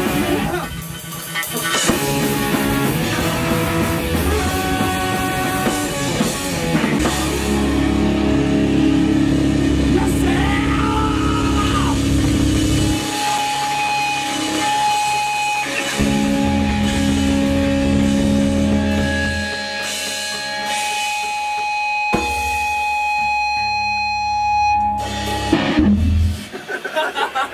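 A live rock band rehearsing together: electric guitar, bass guitar, drum kit and trombone playing. From about halfway through, the band holds long sustained notes.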